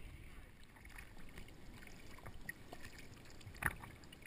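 Faint, muffled lapping of sea water around a small boat, heard through a waterproof action camera. A couple of brief splashes come near the end as the camera dips into the sea.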